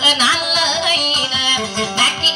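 A woman singing a Tausug dayunday song to her own acoustic guitar, her voice bending and wavering in ornamented runs over the guitar.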